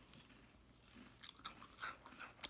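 Faint crunching of crackers being chewed, a few short crisp crunches in the second half.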